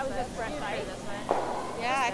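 Voices of curlers talking and calling to one another on the ice, picked up by the arena microphones.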